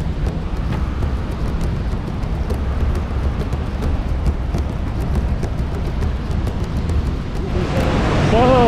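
Steady low rumble of wind on a walking action camera's microphone over a rushing of water, with faint crunching footsteps on a gravel path. Near the end it changes to the louder, brighter rush of a fast mountain river.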